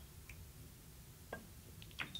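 Billiard balls clicking faintly against each other as they roll after a shot on a carom table: one clear click about a second and a half in, a sharper one at the very end, over a quiet hall.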